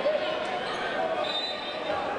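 A basketball bounced on the court by a player preparing a free throw, over steady crowd chatter in a sports hall.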